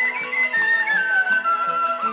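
Traditional Chinese music: a dizi bamboo flute plays a sliding, ornamented melody that falls in pitch across the two seconds, over a lower accompaniment of short notes.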